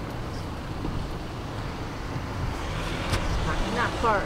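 Steady low rumble of street traffic, with a few short falling chirps near the end.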